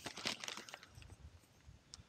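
Nylon fabric of an inflatable sleeping pad rustling and crinkling as it is unfolded by hand, busiest in the first second and then fainter, with a small click near the end.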